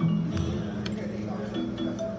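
Video keno machine's electronic draw sounds: short beeping tones repeating about four a second as numbers are drawn. The pattern breaks with a louder sound at the start, as a new game begins, and the tones come back about one and a half seconds in, with a few light clinks.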